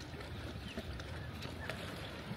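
Steady shoreline ambience: an even low rush of gentle water against the rocks and wind, with faint scattered clicks.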